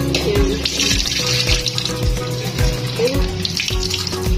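Background music with a steady beat, over a kitchen tap running into a ceramic bowl as mulberries are rinsed, the water hiss coming and going.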